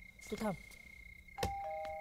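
Electric ding-dong doorbell rung: a click about one and a half seconds in, then a higher chime tone joined by a lower one, both held.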